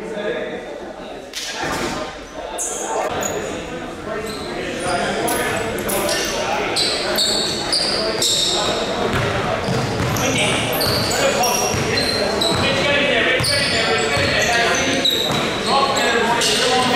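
Basketball game sounds in an echoing gym: the ball bouncing on the hardwood floor, many short high sneaker squeaks as players run, and players calling out.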